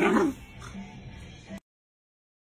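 Akita puppy giving one short yip right at the start, then only a faint low background until the sound cuts off abruptly about one and a half seconds in.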